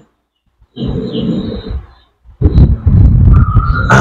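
A man's voice growling and roaring like a big cat, in two bouts: a shorter one about a second in, then a louder, longer one from the middle on. It comes from a man crouched in a trance during a spiritual healing against black magic.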